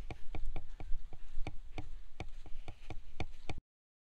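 Quick, evenly spaced clicking, about four to five ticks a second, over a low rumble of wind on the microphone. The sound cuts off suddenly about three and a half seconds in.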